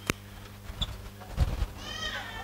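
A short, high-pitched, meow-like cry from a person that falls in pitch near the end, after a few dull thumps, over a steady low hum.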